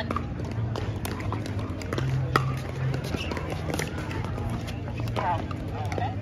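Pickleball venue ambience: scattered sharp pops of paddles striking plastic balls on nearby courts, over background voices and a low steady hum.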